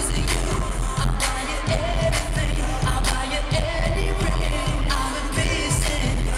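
Live pop song played loud over an arena sound system, with a male voice singing into a handheld microphone over a steady drum beat of about two hits a second.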